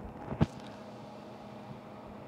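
Room tone in a pause between speech: a faint steady hum, with one short click about half a second in.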